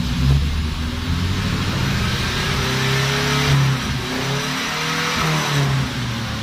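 Nissan A15 carburetted four-cylinder engine being revved twice, its pitch climbing and falling back each time, while a homemade soft-cut rev limiter is tested. The limiter does not cut in.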